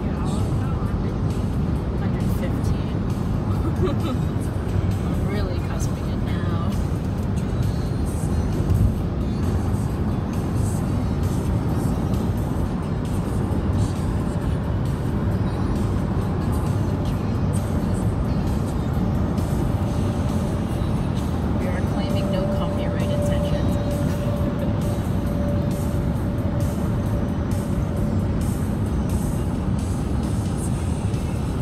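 Steady road and engine rumble inside a car cruising at highway speed, with music playing over it.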